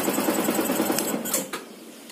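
Yamaha R15 V2's single-cylinder engine idling, then shut off with the engine stop switch, dying away about one and a half seconds in.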